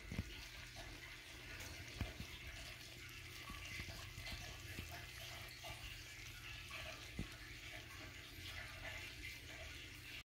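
Chicken and pumpkin stir fry sizzling faintly in a wok, a steady soft hiss with a few light ticks.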